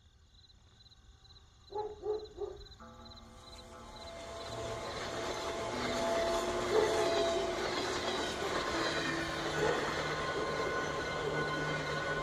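A passing train, its rumble and rail noise swelling over the first few seconds into a steady loud run, with high steady tones over it.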